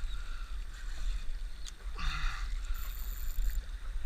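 Small fishing boat at sea: a steady low rumble of wind and water, with a single click a little before two seconds in and a short call just after it.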